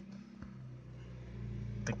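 Quiet parked-car interior: a steady low hum, with one faint click about half a second in.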